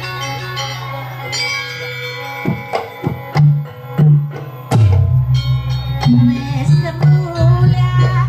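Live Banyuwangi gamelan playing dance accompaniment: metallophones ringing in a running pattern, joined about two and a half seconds in by loud drum strokes that then keep a steady, driving beat.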